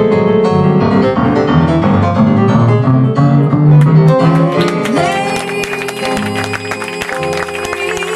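Live jazz: a keyboard piano solo over double bass. About five seconds in, the texture fills out with sustained horn-like tones as the band builds back toward the saxophones and singer.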